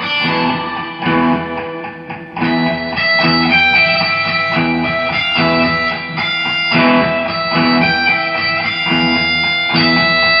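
Homemade looped guitar music: a plucked guitar phrase repeating in an even rhythm, with a short drop-out about two seconds in.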